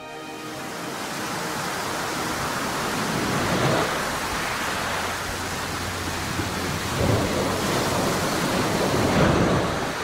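Storm-at-sea sound effect played over a stage PA: a steady rushing noise that builds up, with heavier rumbling surges about four, seven and nine seconds in.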